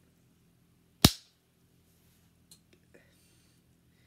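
A single sharp, loud clap-like impact close to the microphone about a second in, then a few faint clicks.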